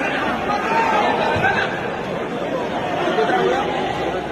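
Crowd of spectators in the stands at a football match, many voices talking at once in a steady din with no single voice standing out. The sound is dull and cut off in the highs, as in phone-recorded video.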